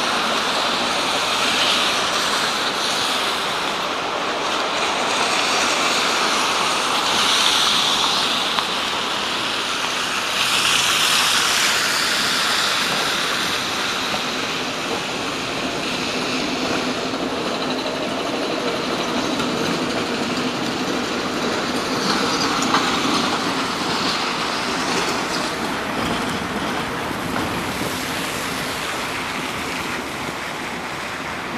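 City street traffic: cars passing on a wet, slushy road, making a continuous tyre and engine noise that swells twice in the first half as vehicles go by.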